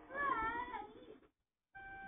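Faint cartoon soundtrack through a TV speaker: a short wavering cry, a moment of dead silence, then a faint held tone.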